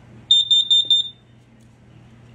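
RV combination LP gas and carbon monoxide detector sounding its test alarm as its test button is pressed: a quick run of shrill, high-pitched beeps lasting under a second, then it stops.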